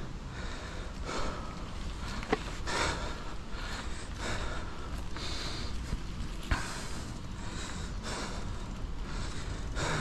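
A cyclist breathing hard while riding a dirt trail, a puff every half second to a second, over a steady low rumble of wind on the microphone and the bike rolling. Two sharp clicks, about two and six and a half seconds in, as the bike goes over bumps.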